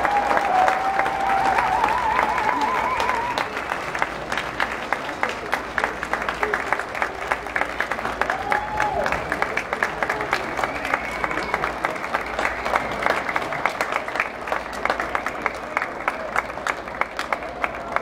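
Audience applause just after a concert band piece ends, with a few wavering cheers over the first three seconds. The clapping drops in level after about four seconds and goes on as thinner, more separate claps.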